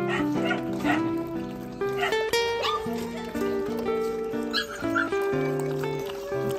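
Background music, with Phu Quoc puppies yipping and whining a few times as they jostle at their food bowls.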